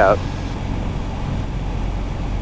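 Piper Warrior's four-cylinder engine running steadily at idle, throttle pulled all the way back for landing, heard as a low hum with air noise in the cabin.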